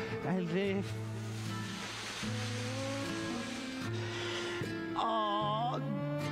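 Slow, chant-like music: long held low drone tones that move in steps, with a wavering voice near the start and again about five seconds in, and a hissing wash through the middle.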